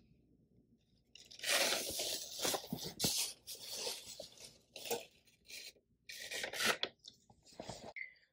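Handling noise of a polyester drawstring bag being moved and rubbed close to the microphone: uneven rustling and scraping bursts that start about a second in and run for several seconds.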